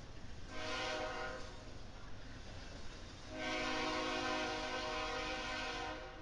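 Freight locomotive horn sounding a short blast about half a second in, then a long blast from about three seconds in, over the low rumble of an intermodal freight train's cars rolling by.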